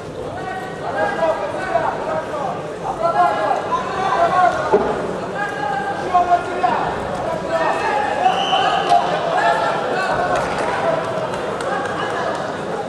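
Several people's voices in a large hall, calling and shouting over one another with no clear words, while a wrestling bout goes on.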